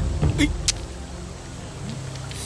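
Quick swishes of cloth as wide robe sleeves are flung up, ending in a sharp snap, over a low steady hum.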